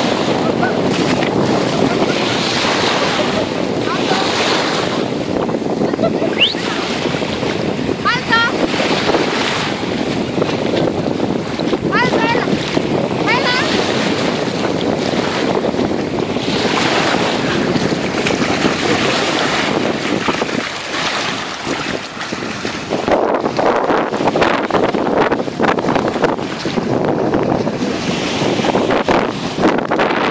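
Wind buffeting the microphone over small sea waves washing ashore: a steady noise that dips briefly about twenty seconds in.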